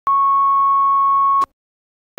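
A steady electronic test tone at about 1 kHz, like a videotape line-up tone, held for about a second and a half and cutting off abruptly.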